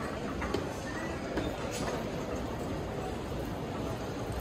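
Large airport terminal hall ambience: a steady wash of background noise from the hall, with a few scattered sharp clicks of footsteps on the hard floor.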